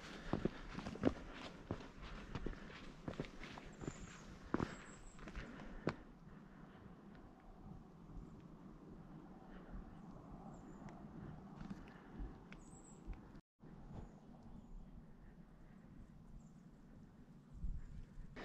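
Footsteps and scuffs on bare rock, a string of short clicks over the first few seconds, then quiet open-air ambience with a faint hiss and a few tiny high chirps.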